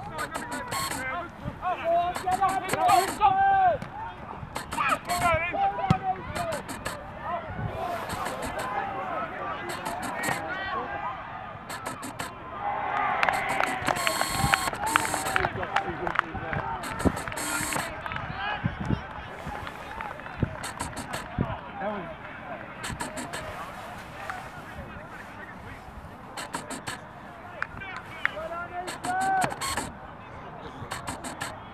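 Rugby players and touchline spectators shouting across an open pitch, voices rising and falling throughout. A louder stretch of shouting and cheering comes about halfway through, with a few sharp knocks.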